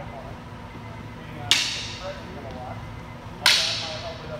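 Two sharp cracks of single sticks striking during sparring, about two seconds apart, the second slightly louder, each trailing off in the echo of the gym hall.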